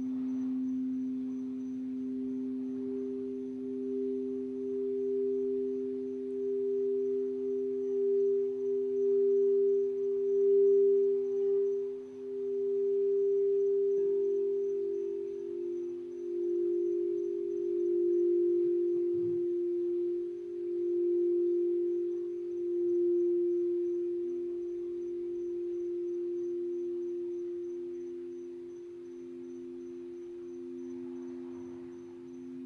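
Crystal singing bowls being played to a sustained ring: two steady, pure tones, one low and one higher, swelling and fading in waves. About halfway through, the higher tone is taken over by a slightly lower one as another bowl comes in.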